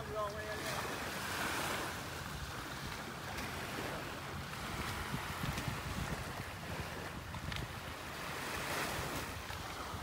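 Small waves washing onto a sandy beach, with wind buffeting the microphone. A low steady rumble runs underneath.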